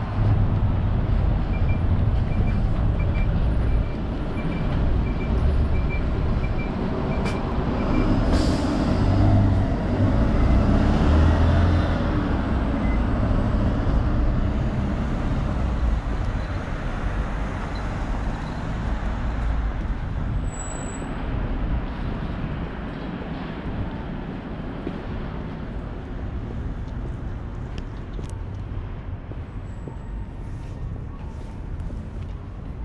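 Road traffic with a bus passing close by: engine rumble, and a short air-brake hiss about eight seconds in. A quick run of short, high beeps sounds a couple of seconds in. The traffic noise eases toward the end.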